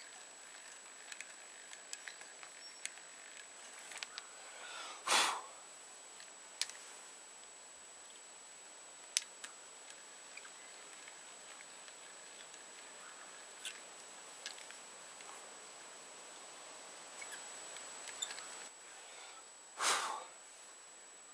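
Quiet hand-tool work on a small knife handle: scattered light clicks and taps, with a brief louder rush of noise about five seconds in and another near the end, over a steady faint high whine.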